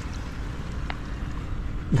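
Steady wash of small waves on a sandy shore, with wind rumbling on the microphone.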